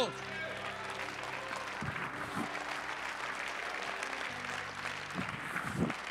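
Congregation applauding throughout, over held low chords of background music that change about four seconds in. A few brief voices call out within the clapping.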